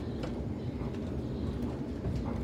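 Steady low rumble of a Sydney Trains Waratah electric train in motion, heard from inside the passenger carriage, with a few faint ticks.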